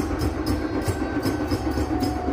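Steady rhythmic drumming, about four strokes a second, with deep thumps beneath.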